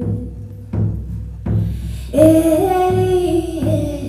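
Hand-held frame drum struck in a steady slow beat, about four strokes every three seconds, with a woman's voice holding a long sung note that steps slightly up in pitch through the second half.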